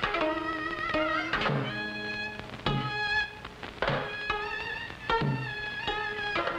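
Traditional Korean music for the monks' dance: a held melody line with a wavering, sliding pitch, over four low drum strokes coming about every second and a quarter.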